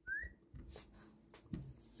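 A short rising squeak right at the start, followed by a few faint clicks and taps of metal folding knives being handled on a rubber mat.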